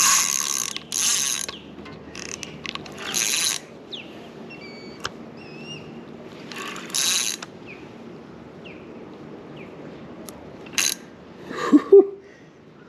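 Spinning reel's drag clicking out line in about six short bursts as a big hooked fish pulls against it.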